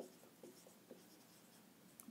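Faint marker strokes on a whiteboard as a word is written, a few short scratches over quiet room tone.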